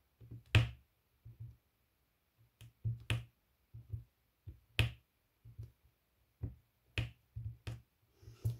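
Square diamond-painting drills clicking into place one after another as a drill pen presses them onto the canvas: a series of sharp, irregular clicks, about two a second.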